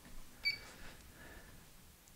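LifeSpan TR1200-DT3 treadmill console giving a single short, high beep about half a second in as its pause button is pressed, with a faint click or two around it.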